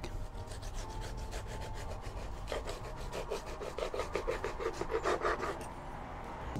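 A large kitchen knife sawing through the edge of a chocolate-glazed hazelnut cake and scraping on a wooden cutting board, in quick, regular strokes that get louder in the second half.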